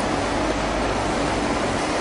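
Steady, even hiss of background noise: room tone with recording hiss, no distinct event.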